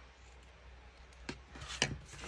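Soft handling of paper cards and lace on a craft cutting mat, with two short clicks, a small one past the middle and a louder one near the end.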